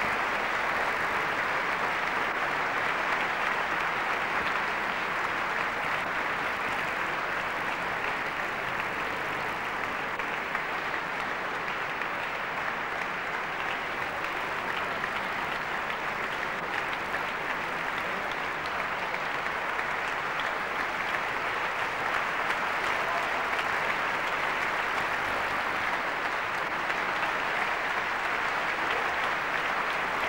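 Concert hall audience applauding steadily, a dense even clapping with no music.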